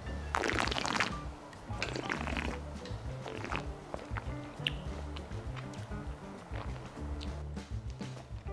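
Soft background music with a steady low beat. Near the start, two short hissy slurps as wine is sipped and drawn through the mouth with air while tasting.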